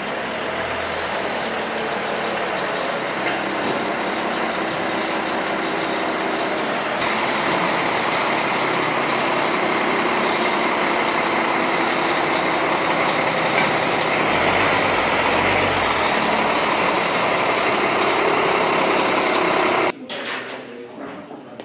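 Diesel engine of a large military tactical truck running as it pulls slowly into a maintenance bay, a steady noise that grows gradually louder, with a brief deeper rumble about three quarters of the way through.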